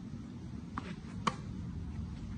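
A tennis ball struck by a racket: one sharp pop a little over a second in, with a fainter tap just before it, over a low steady background rumble.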